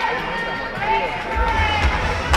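Indistinct voices calling out in an ice rink during play, with a low rumble starting about one and a half seconds in.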